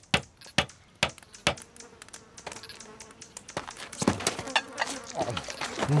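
Campfire crackling with irregular sharp pops over a faint steady buzz. A cough comes at the very end.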